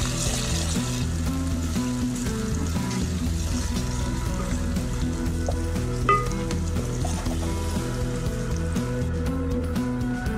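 Chopped onions and curry leaves sizzling in hot oil in an aluminium pan, stirred with a wooden spoon, under steady background music.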